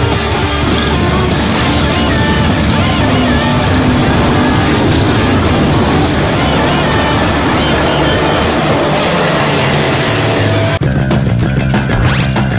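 Rock music over a motorcycle engine running as the bike carries a rider and passenger. Near the end the sound cuts abruptly to a different music cue.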